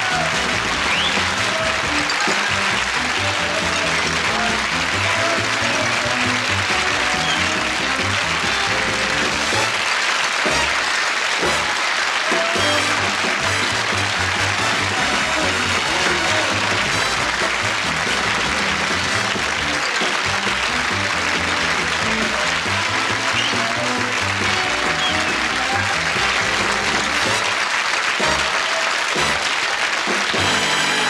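Closing theme music for a television comedy show, played over steady studio audience applause.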